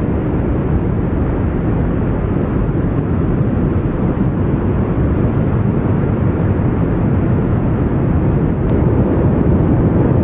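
Kilauea lava fountains erupting from the summit vents: a steady, deep rushing noise with no separate bursts, growing slightly louder near the end.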